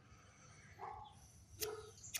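Near quiet: faint outdoor background, with a brief soft sound about a second in and a small click shortly before the end.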